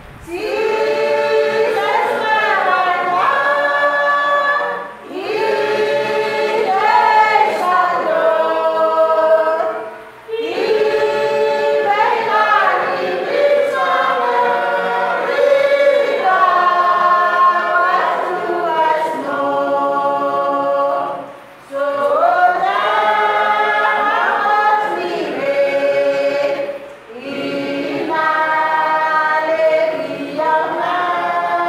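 A church congregation singing a hymn together without instruments, in long held phrases with a brief pause for breath about every five seconds.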